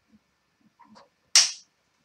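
Handling noise as a telescope is turned by hand on its mount: faint rubs and taps, then one sharp swish about one and a half seconds in.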